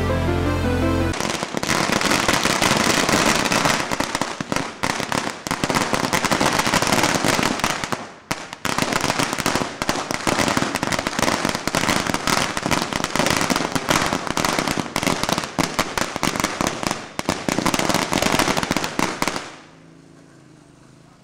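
Firecrackers going off in a long, rapid run of sharp bangs, with a brief lull about eight seconds in; the bangs stop shortly before the end. Music plays for about the first second.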